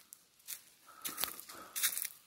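A few short crunching footsteps through dry weeds and debris, with a single sharp click in between.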